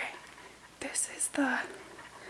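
A person whispering a few words against quiet room tone.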